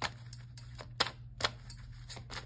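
Sharp, irregular clicks and taps from a deck of oracle cards being handled on a wooden table, about seven in two seconds, the loudest about halfway through, over a faint steady low hum.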